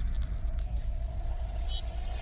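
Tail of a cinematic logo-reveal sound effect: a deep rumble under a fading hiss, with a faint held tone entering about halfway and a few tiny high glints near the end.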